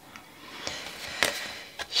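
Faint handling noise of tarot cards: a soft rustle with a few light taps and clicks as the cards are moved over a wooden table.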